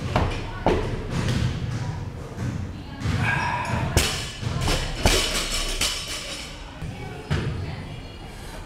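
A barbell loaded with rubber bumper plates thudding onto a gym floor several times, the loudest impacts about four and five seconds in.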